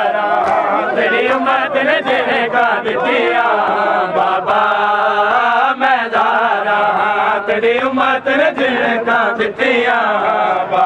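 Group of male mourners singing a Punjabi noha in unison, the continuous chant cut through by the sharp slaps of hands beating on bare chests (matam).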